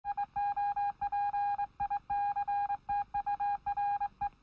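An electronic beep tone keyed on and off in an uneven run of short and long pulses, like Morse code telegraph signalling: a news-intro sound effect.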